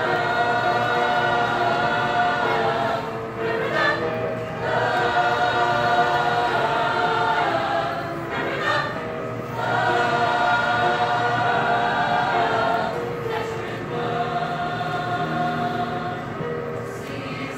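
A mixed-voice high school show choir singing, in long held phrases with short breaks between them.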